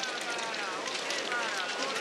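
Steady scraping hiss of many skate skis and poles on packed snow as a pack of cross-country skiers passes, with distant voices calling in the background.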